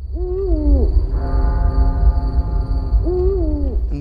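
Spooky music bed: a heavy deep drone and a steady high tone under a held chord, with a ghostly, voice-like tone that glides up and then down twice, once near the start and once near the end.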